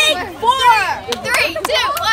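Young girls' voices: laughter and excited, wordless vocal sounds, with a few sharp claps or clicks.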